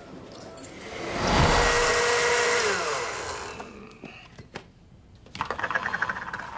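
Kitchen blender running loud, its motor tone held steady, then sliding down in pitch as it is switched off and spins down about three seconds in.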